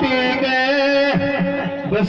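Live Rajasthani Meena dhancha folk singing: a man's voice over a steady held instrumental note, the voice dropping away in the second half.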